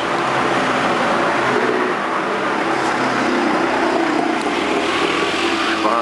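Steady hum of street traffic, motor engines running without a break.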